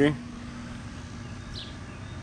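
Steady outdoor background noise with nothing distinct in it. A faint, brief high chirp comes about one and a half seconds in.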